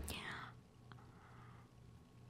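A woman's breathy whisper falling away in the first half second, then faint room tone with a single soft click about a second in.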